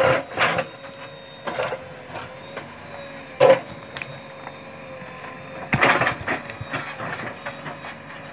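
JCB 3DX backhoe loader working rock: the machine runs with a steady whine while its backhoe bucket knocks and scrapes against large stones, in several short clattering bursts about half a second in, around three and a half seconds and near six seconds.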